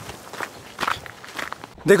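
Footsteps on a dirt trail at a walking pace, about two steps a second.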